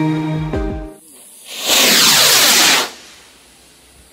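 Background music stops about a second in. Then a firework rocket (Funke Alfa Rocket 1) launches with a loud hissing whoosh that lasts about a second and falls in pitch.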